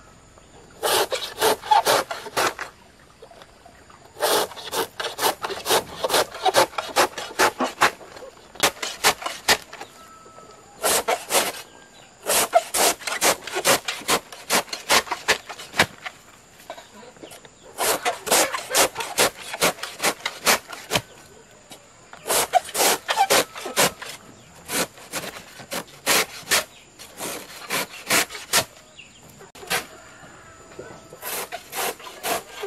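A large broad-bladed knife slicing a peeled bamboo shoot into thin shavings: runs of quick, short cutting strokes, several a second, broken by brief pauses.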